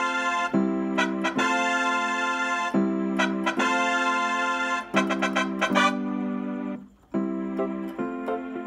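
Electronic keyboard playing a run of sustained, organ-like chords in C major, each held for about a second before the next, with a brief break near seven seconds.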